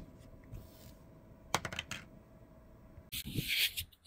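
Faint handling sounds: a few light clicks and taps as the small plastic charging case of a wireless lavalier mic set is handled on a desk mat. A brief rustling hiss follows near the end.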